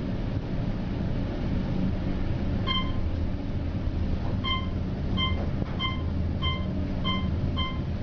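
Otis gearless traction elevator car travelling upward at high speed: a steady low rumble of ride noise. A short electronic beep sounds as each floor is passed, first once, then about every 0.7 s as the car speeds past the upper floors.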